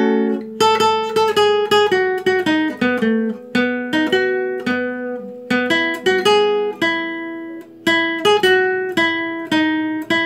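Classical guitar played solo: a melody of plucked single notes and chords over bass notes, each note ringing and fading, about two or three new notes a second.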